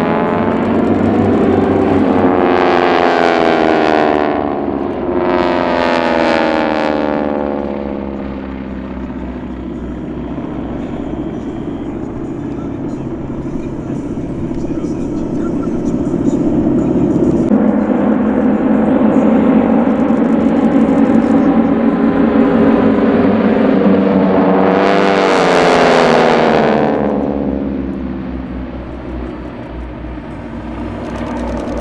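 Radial engines of a formation of North American T-6 Texans droning overhead, their pitch falling as the planes pass, twice a few seconds in and again near the end, with a steady drone in between.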